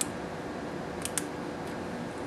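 Small zip-top plastic bag being pressed shut by hand: a sharp plastic click at the start and two more close together about a second later, over a steady faint hiss.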